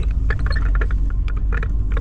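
Inside the cab of a VW Amarok pickup crawling over a rough dirt track: a steady low rumble of engine and road, with frequent small irregular knocks and rattles.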